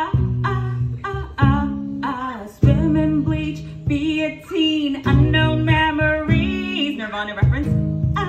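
A woman singing live to her own strummed acoustic guitar, the chords struck in a steady rhythm under the melody.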